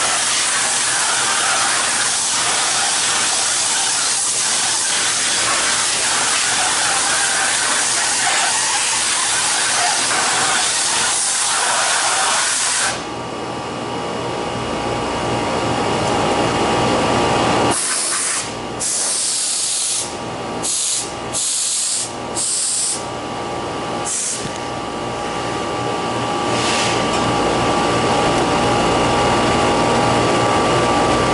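Walk-in cooler condensing unit running after a compressor change and R407F charge: a loud steady hiss cuts off about 13 seconds in, leaving the unit's steady hum. The hiss then comes back in several short bursts and builds again toward the end.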